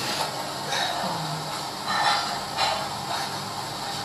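Faint, indistinct voices and breathy sounds from the people around, over a steady background hiss.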